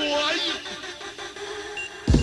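Breakdown in a 1990s jungle drum and bass track: the breakbeat and sub-bass drop out, leaving sampled sounds with sliding pitch and a thin high tone near the end.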